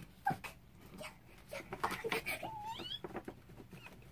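Paper and packaging rustling and crinkling in irregular short bursts as a gift is unwrapped from a gift bag, with a brief high whine about two and a half seconds in.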